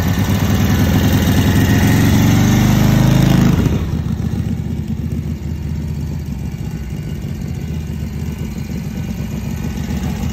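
Harley-Davidson WL 45-cubic-inch flathead V-twin running warm-up revs after a cold start: the revs rise for the first few seconds, then drop back sharply about three and a half seconds in and settle to a steady idle.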